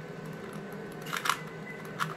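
Plastic layers of a 3x3 Rubik's cube being twisted by hand, a short cluster of clicks about a second in.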